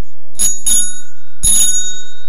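Bicycle bell rung: two quick rings close together, then a third about a second later, each ringing on briefly.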